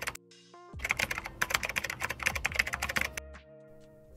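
Computer keyboard typing sound effect: a rapid run of key clicks lasting about two seconds, over soft background music.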